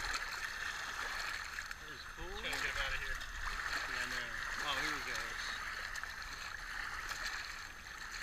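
Shallow seawater washing and trickling over the rocks at the water's edge, a steady rushing hiss. Two short stretches of a person's voice come in the middle, without clear words.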